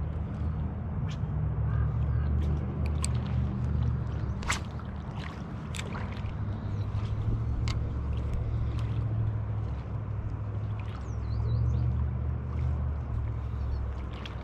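Wind buffeting the microphone: a low, uneven rumble that swells and eases. A few small clicks and ticks are scattered through it.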